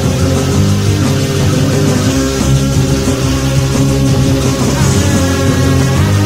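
Instrumental passage of a glam metal/punk rock song: full band with electric guitar, playing loud and steady without vocals.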